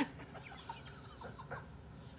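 A click at the start, then a man's faint, stifled chuckles: a few short breathy bursts of laughter.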